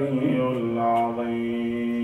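A man chanting Quranic verses in Arabic in the melodic tajweed style, moving between notes and then holding one long steady note through the second half.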